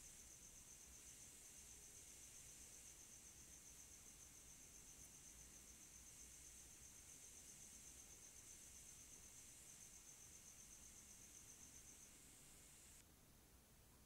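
Near silence: a faint, steady high-pitched hiss with a thin whine from the recording's background noise, which drops away near the end.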